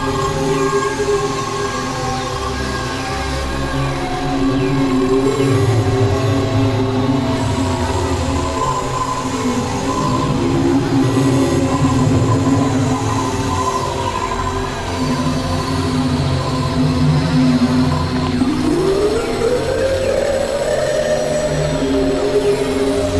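Experimental electronic noise music: layered synthesizer drones and sustained tones, with a tone sliding upward in pitch near the end.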